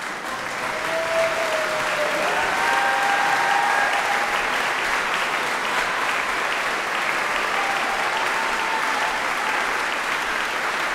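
Concert-hall audience applauding, the clapping swelling over the first second and then holding steady. A few long pitched calls, which sound like shouts from the audience, rise over it in the first few seconds and again near the end.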